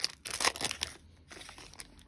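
Foil trading-card pack wrapper of a 2021 Panini Playoff football hobby pack being torn open and crinkled by hand. The crinkling is loudest in the first second, then fades to a few faint rustles.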